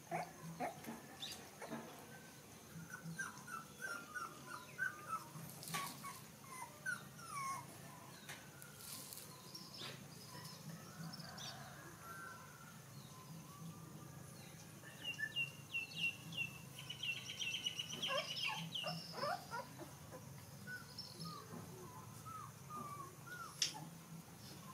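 Puppies whimpering and yipping as they tussle: many short, high squeaks and little rising and falling whines, coming in quick runs at times, over a steady low hum. A single sharp knock sounds just before the end.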